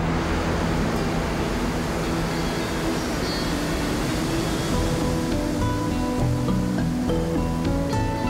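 Roar of a large waterfall, the Lower Falls of the Yellowstone River, coming in suddenly and easing after the first few seconds. Background music of long held notes plays under it.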